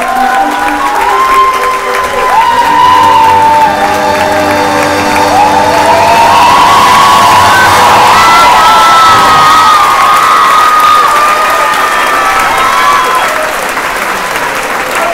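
Theatre audience applauding and cheering, with long, wavering shouts rising and falling above the clapping.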